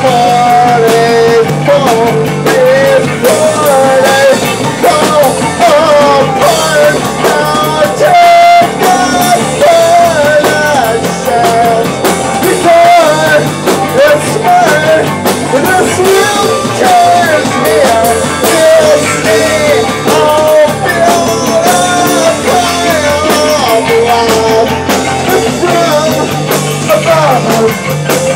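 A live rock band playing loud: a male singer shouting the song over electric guitar and a drum kit, recorded close to the stage.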